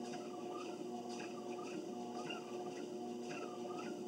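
A treadmill running with a steady motor hum and a rhythmic squeak about twice a second as its belt is walked on.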